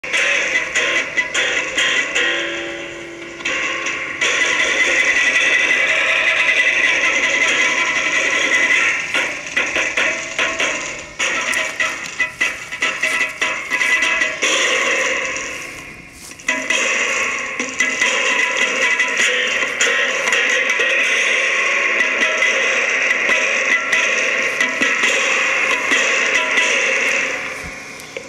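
Homemade electric tennis-racket guitar played through a small Marshall mini amp, giving a loud, noisy, distorted wash of sound that drops away briefly a few times.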